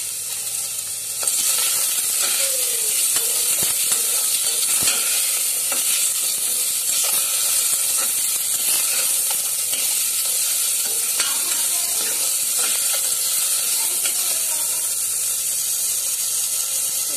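Chicken pieces and vegetables sizzling in hot oil in a stainless steel pressure cooker, with a spatula scraping and stirring them against the pan. The sizzle grows louder about a second in and then holds steady.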